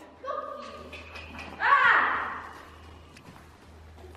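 A high-pitched voice calls out briefly about one and a half seconds in, after a faint voice near the start, over a steady low hum, with a few faint taps in a large echoing hall.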